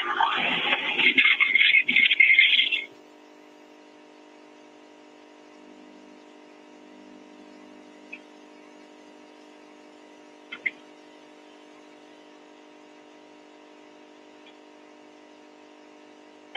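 A burst of laughter, then a steady machine hum, several fixed tones together, carried in the background of a phone call, with two faint clicks about ten seconds in.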